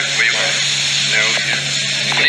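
Indistinct chatter of several voices talking at once, over a steady low hum, a thin high whine and hiss from the old recording.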